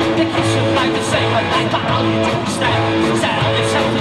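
Punk rock band playing live: distorted electric guitar, bass and drums in an instrumental stretch without vocals, with a steady beat.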